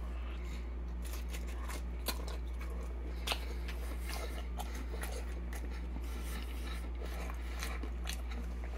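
Close-up mouth sounds of a man biting into and chewing a mouthful of pizza: scattered faint clicks and crunches, a little louder about two and three seconds in, over a steady low hum.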